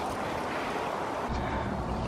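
Steady outdoor background noise with no distinct events; a low rumble joins a little past a second in.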